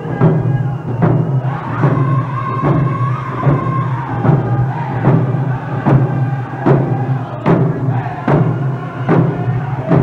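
Round dance song: hand drums struck on a steady beat about every 0.8 s, with a group of singers chanting high-pitched vocals over the drum.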